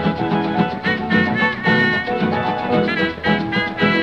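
Instrumental passage of a 1934 Cuban dance-band recording, with no singing: several instruments play held notes over a steady, evenly beaten rhythm.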